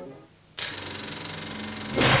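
Sound effect of a TV channel's film ident: a rapid, steady mechanical rattle that starts suddenly about half a second in, then a loud swelling whoosh near the end.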